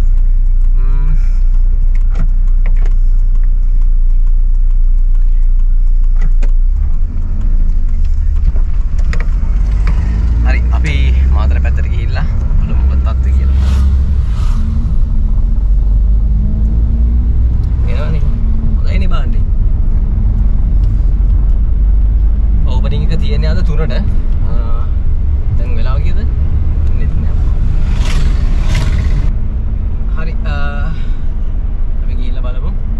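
Low engine and road rumble inside the cabin of a moving car, growing louder about seven seconds in.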